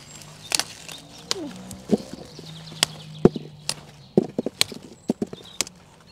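Brussels sprouts being snapped off their stalk one by one by gloved hands: a run of sharp, irregular clicks and snaps.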